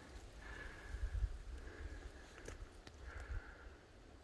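Faint footsteps on loose stony ground, a few scattered clicks of rock underfoot over a low rumble.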